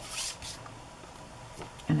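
A thin clear plastic stamp-positioning sheet slid out from under a card across a cutting mat: a brief rustling swish in the first half second, then only faint room tone.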